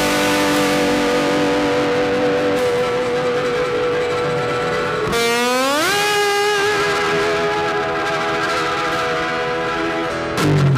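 A Honda CB500X's parallel-twin engine with an aftermarket Staintune exhaust, running at steady revs under way. About five seconds in, the note drops out briefly and then rises over about a second as the bike accelerates.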